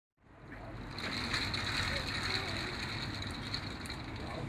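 City street ambience fading in at the start: a steady low traffic rumble with the voices of passers-by, and a thin high whine running through the middle.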